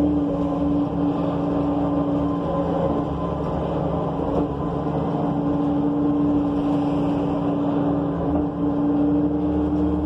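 A New Flyer C40LF bus under way, heard from inside: its Cummins Westport C Gas Plus natural-gas engine and Allison B400R automatic transmission are running with a steady humming tone over road noise and low rumble. The tone eases off for a few seconds in the middle, then comes back.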